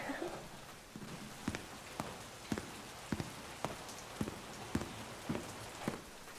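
Steady rain hiss, with a short knock recurring evenly about twice a second through most of it.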